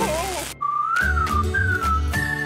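A cartoon electric-shock sound effect, wavering in pitch, cuts off about half a second in. It is followed by a whistled tune that glides up and down over a low pulsing beat.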